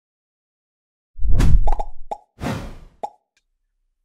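Short edited transition sound effect that comes in suddenly out of dead silence about a second in: a deep boom, a few quick pops, a swoosh, then one last pop.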